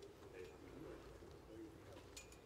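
Near silence, with a few faint, low coos from a dove.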